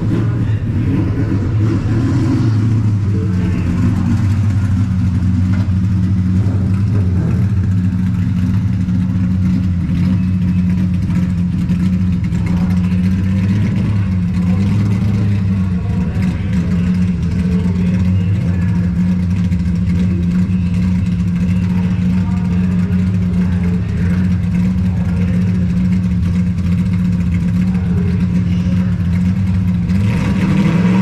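Ford Coyote 5.0 V8 of a Fox Body Mustang Coyote Stock drag car idling steadily, with a loud, even engine note.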